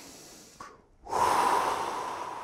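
A deep breath taken as a breathing exercise: the tail of a long inhale dies away, and after a short pause a forceful exhale is blown out hard about a second in, then fades slowly.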